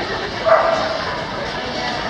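A dog barks once, sharply, about half a second in, over the chatter of a crowd.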